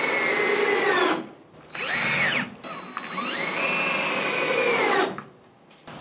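Cordless drill driving screws at an angle to toenail a wooden stud into the header above, in three runs of the motor whine: the first stops about a second in, a short one follows, and a longer one rises in pitch as it spins up and stops about a second before the end.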